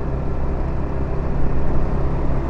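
Yamaha motor scooter's engine running steadily while riding, heard as a low, even hum with road noise.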